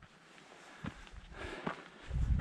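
Quiet footsteps of a hiker walking on a dirt and stone trail, two steps about a second in and near the end.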